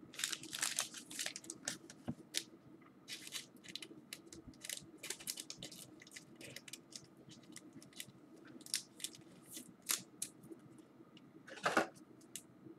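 Trading cards and their plastic wrapping or sleeves being handled: a run of short crinkles and rustles, busiest in the first couple of seconds, with a louder crinkle near the end.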